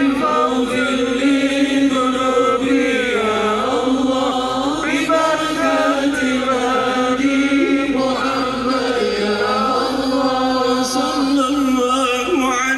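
Sholawat, Islamic devotional chanting in praise of the Prophet, sung by male voices through a loudspeaker system in long, held, gliding melodic lines.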